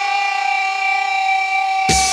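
Jungle / drum and bass mix in a breakdown: a single steady held tone with no drums. Just before the end the beat drops back in with deep bass hits.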